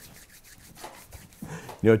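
Hands rubbing together, a faint dry rustling picked up close by a clip-on microphone, before a man starts speaking near the end.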